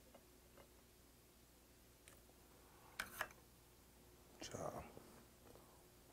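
Near silence in a quiet room, broken by one short click about three seconds in and a softly spoken word near the end.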